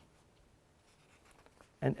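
Faint scratching of a marker pen on an overhead-projector transparency, with a few light ticks late on.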